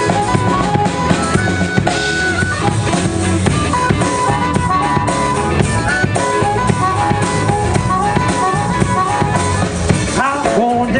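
Live hill-country blues instrumental: harmonica playing short, repeated notes over electric guitar and a steady drum beat.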